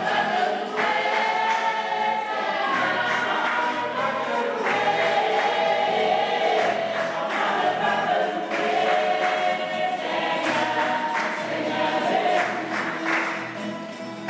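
A choir singing a gospel song over a steady percussive beat.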